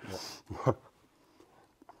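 A breathy exhale, then a man's short spoken "ja" while tasting food, followed by a quiet pause with a faint tick.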